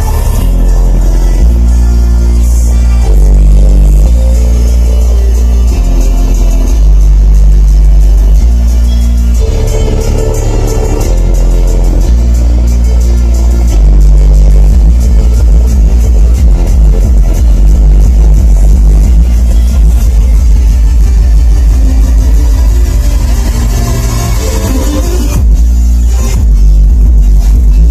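Music played very loud through a pair of J-Audio subwoofers, the deep bass notes stepping in pitch every second or two. About 14 seconds in, the bass turns into a fast pulsing beat.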